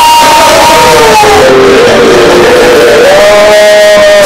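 A man's voice through a loud church PA holding long notes of praise over a congregation and band. The pitch holds high at first, steps lower in the middle, then rises to another held note near the end.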